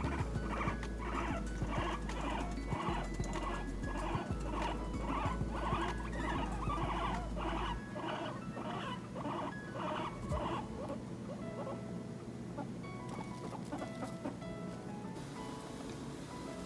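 Guinea pigs chewing hay: a steady rhythmic crunching, a couple of bites a second, that fades out about halfway through.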